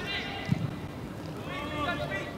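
Faint voices over low, steady football-ground ambience, with a brief knock about half a second in.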